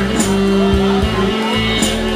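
Live sixties-style band playing an instrumental passage: held organ chords over bass and a steady drum beat, with a cymbal crash about every second and a half.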